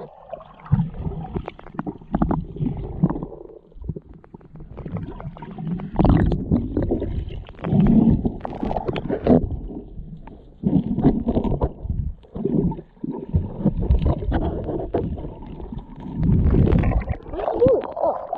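Muffled underwater rumbling and gurgling of creek water heard through a submerged action camera, swelling and fading in uneven surges as the camera moves through the water.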